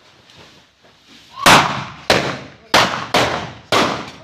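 Hand-held naal, homemade iron pipe guns loaded with explosive powder, fired one after another: five loud bangs in about two and a half seconds, starting about a second and a half in, each ringing off briefly.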